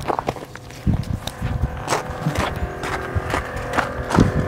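Footsteps crunching on a gravel driveway: a run of irregular steps.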